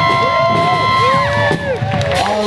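Audience cheering, with high whooping voices held for about a second and then falling away.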